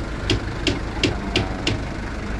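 An engine running at idle with a steady low rumble and a sharp knock about three times a second.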